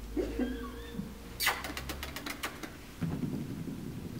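Labradoodle puppy's claws clicking on a hard wood floor as it trots, a quick run of sharp clicks about a second and a half in.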